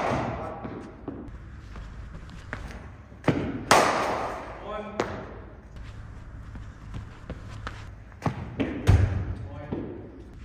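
Cricket balls being played in an indoor net: sharp, hard knocks of ball on pitch and bat, each with an echoing tail from the large hall. There is one pair of knocks about three and a half seconds in and another pair near the end.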